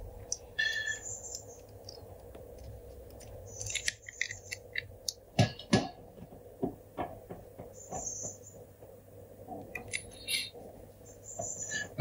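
Small clicks and taps of an iPhone XR's screen flex cables being pressed onto their connectors and the phone being handled on a work mat, the loudest two knocks about five and a half and six seconds in. A few brief high chirps come and go between them.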